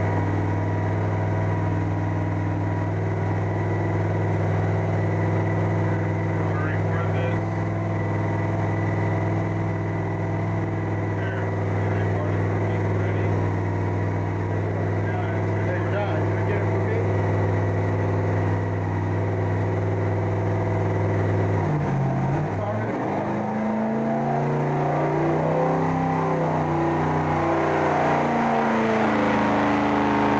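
V8 engine running on an engine dyno, holding a steady speed for about twenty seconds. About two-thirds of the way through its speed drops suddenly, then rises and falls unevenly as it is revved.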